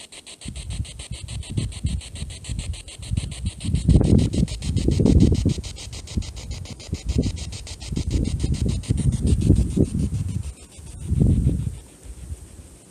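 Spirit box sweeping through radio stations: a fast, even chopping of static, with irregular louder bursts of low noise over it.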